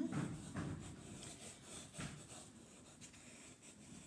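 Chalk scratching on construction paper in short, irregular strokes, pressed down hard to lay on colour. It is faint, with the firmer strokes in the first half, one about two seconds in.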